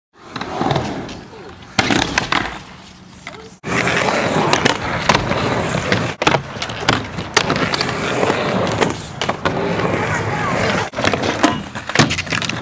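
Skateboard wheels rolling on ramps, broken by repeated sharp clacks and knocks of the board hitting the ramp. The sound breaks off and restarts at several cuts between clips.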